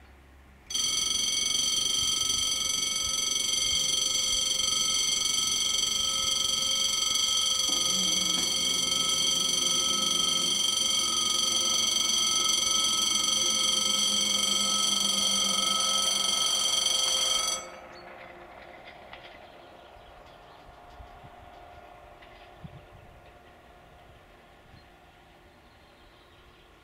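A level-crossing warning ringer sounding as a loud, steady ring for about seventeen seconds, then cutting off suddenly, warning of the approaching railcar.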